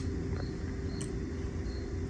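Steady low background hum with faint short high chirps every second or so and a faint tick about a second in.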